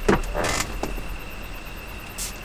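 Handling noises as a small object is taken down from an overhead shelf: a knock at the start, a short scraping rustle about half a second in, then a click.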